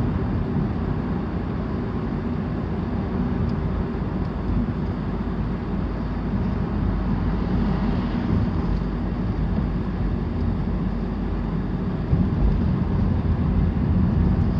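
A car driving slowly, heard from inside the cabin: a steady low rumble of engine and tyres on the road, a little louder near the end.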